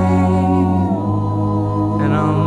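Voices singing and humming unaccompanied, holding long notes that change pitch about halfway through.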